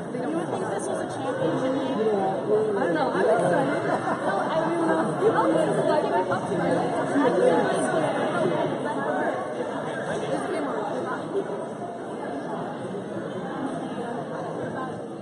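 Spectators chattering in a large gymnasium: many overlapping conversational voices, none clear enough to follow, carried on the hall's echo.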